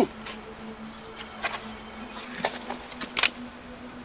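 A steady low buzzing hum at one pitch, with a few short scuffs or knocks scattered through it.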